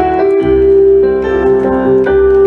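Digital stage piano played live through PA speakers: a sustained melody note over chords and bass notes, with a chord change about half a second in.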